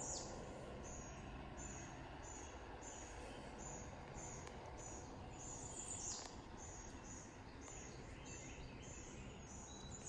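Faint morning wildlife sounds: a high, short chirp repeating evenly about every two-thirds of a second, with a louder, falling bird call about six seconds in, over a low steady hiss.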